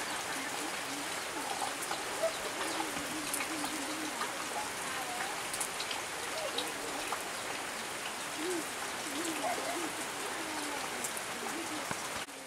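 Steady rain falling, a continuous patter of drops, with faint, indistinct calls rising and falling over it now and then.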